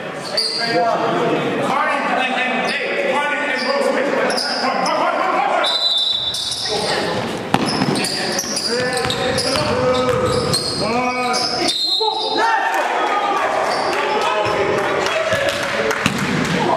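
Players and spectators shouting in a gymnasium during a basketball game, with a basketball bouncing on the court; the sound changes abruptly twice, at cuts between clips.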